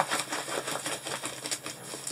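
A rolled diamond painting canvas with its plastic cover film crackling in quick, irregular clicks as it is rolled the opposite way to flatten it.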